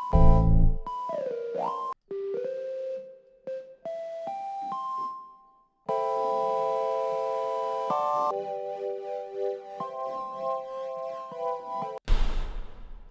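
Keyboard-like notes played from a sampled microwave sound in a music program: a quick upward pitch slide about a second in, then single notes stepping upward, then held chords. The passages start and stop with short silences between them.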